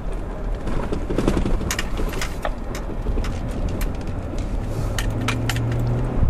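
Car cabin noise while driving: a steady low rumble, with a scatter of sharp clicks and knocks through most of it and a low steady hum joining about five seconds in.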